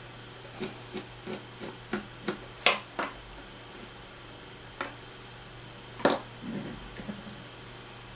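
Small ticks and clicks of a screwdriver working a screw out of a plastic gas-monitor housing, the sharpest click near three seconds in, then a few single plastic clicks as the bottom cover is pulled off.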